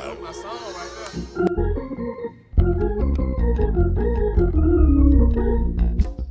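Organ coming in about two and a half seconds in, playing held chords that step from one to the next over a strong deep bass line: the opening of a gospel song's introduction.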